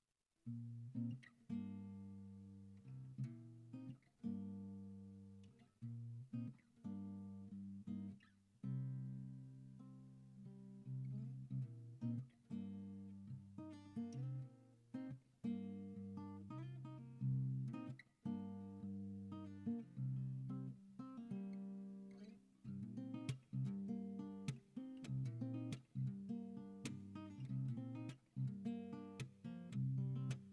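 Tanglewood TSF-CE Evolution acoustic guitar played fingerstyle, plucked notes and ringing chords in an alternate tuning with the low strings dropped to C and G and a capo at the third fret. The playing starts about half a second in.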